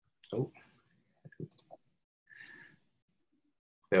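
A man says a short "oh", then a few soft clicks and a brief breath out, with dead silence between them, as heard over a Zoom call. Speech starts again at the very end.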